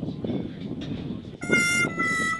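Low outdoor background noise with faint voices, then about one and a half seconds in a harmonica starts playing a loud held chord.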